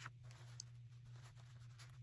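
Near silence with a few faint scratchy rustles of a paper towel being handled, and one small tick, over a low steady hum.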